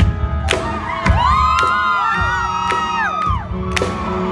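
Live band playing an instrumental stretch with a steady drum beat. From about a second in, several audience members scream and whoop over it for a couple of seconds.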